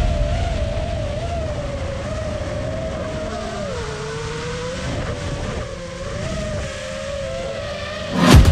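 FPV racing drone's brushless motors and propellers whining, the pitch wavering up and down with throttle and dipping lower about halfway through, over a steady rush of air.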